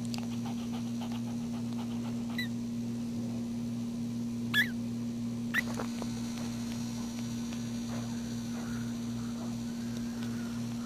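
Newborn Maltese puppies squeaking at the teat: three short, high-pitched squeaks, the loudest about halfway through, over a steady electrical hum.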